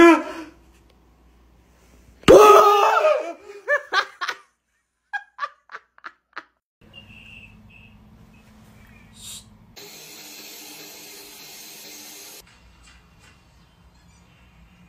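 A person laughing loudly, a long laugh about two seconds in followed by several short ones. Later comes a steady noise lasting a couple of seconds that cuts off suddenly.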